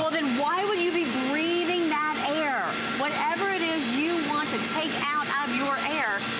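Continuous talking over a steady hum from a vacuum cleaner running with its brush nozzle against an air purifier's filter, cleaning out the trapped dust.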